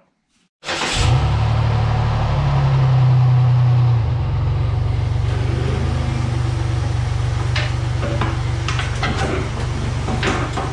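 Dodge Nitro's V6 engine starting on its first run after an oil change: it catches almost at once, under a second in. It runs a little higher and louder for the first few seconds, then settles to a steady idle.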